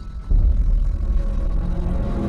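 A sudden deep rumble sound effect starts about a third of a second in and carries on low and heavy, set in a dark intro music track.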